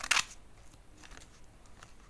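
A short, sharp burst of noise like a crunch or snip just after the start, followed by faint crackling with scattered small clicks.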